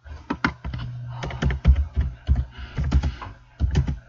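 Computer keyboard being typed on: a quick, irregular run of keystroke clicks, over a low steady hum.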